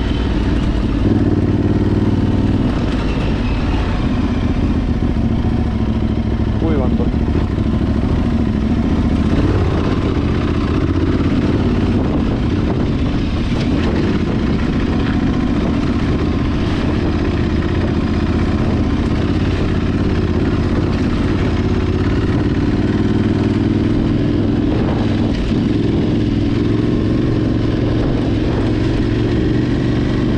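Motorcycle engine running steadily under way at moderate speed, heard from on the bike, its pitch rising and falling a little with the throttle, over a constant rush of wind and tyre noise on a dirt track.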